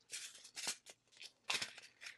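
Hands handling a small plastic bag of diamond-painting drills: a few short plastic rustles.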